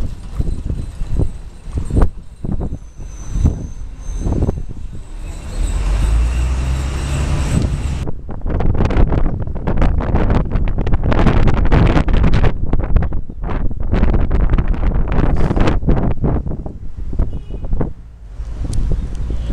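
Wind buffeting the microphone on the open top deck of a moving tour bus, gusting irregularly over a low road and engine rumble. About halfway through the buffeting turns denser and louder.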